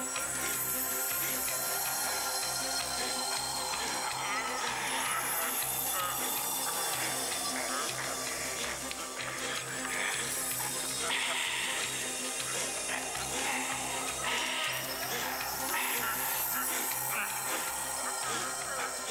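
Film soundtrack music playing steadily, with voices mixed in.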